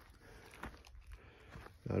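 Faint low outdoor background noise with a few soft ticks, then a man starts to speak near the end.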